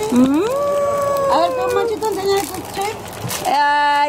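A person's high voice sliding up into a long drawn-out vowel held for about two seconds, then near the end a lower voice holding another steady vowel.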